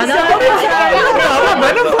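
Several people talking over one another at once.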